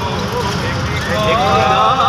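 Passengers' voices over the steady low rumble of a bus's engine and road noise, the voices becoming louder and more drawn-out about a second in.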